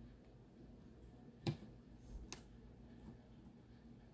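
Two light, sharp clicks a little under a second apart, the first louder, from small hard objects knocking together while rocks are handled during gluing.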